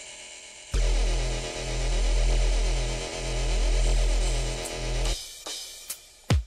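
A dubstep-style wobble bass sample from the edjing Mix app's Breaks sampler pack: a deep electronic bass with a rhythmic wobble, swelling up twice. It starts under a second in and cuts off suddenly a little after five seconds, followed by a brief noisy burst near the end.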